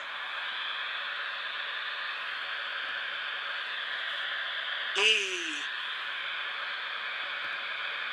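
Steady static hiss from a smartphone's speaker, the ghost-portal app's background. About five seconds in, a ghostly voice from the app calls out the letter "E" with a downward slide in pitch.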